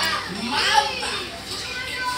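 A child's high-pitched voice, a squealing vocalization that rises and falls in pitch, about a second long, without clear words.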